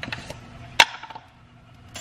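A plastic peanut butter jar's screw lid being twisted off and handled, with light clicks and one sharp tap a little under a second in.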